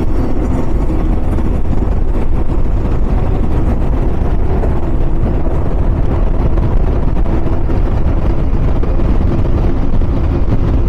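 Outboard-powered boats running at high speed: a steady engine drone under the rush of water and wake.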